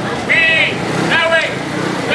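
A raised voice calling out in short, high-pitched phrases over a steady low engine hum from a motor scooter moving slowly through the crowd.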